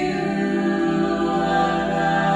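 Mixed a cappella vocal group of seven voices, women and men, singing in close harmony through microphones, holding long chord notes with a change of chord at the start.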